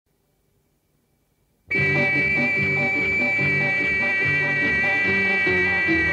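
Near silence, then about a second and a half in, the instrumental prelude of a 1961 Tamil film song starts suddenly, with long held high notes over a repeating bass figure.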